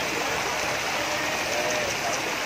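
Steady splashing of a mass of farmed shrimp leaping at the water surface inside a harvest net being drawn in, with faint voices behind it.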